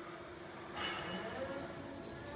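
Linde K13 battery-electric very-narrow-aisle truck setting off: a steady low hum, then, about a second in, louder running noise with light rattles as it begins to travel.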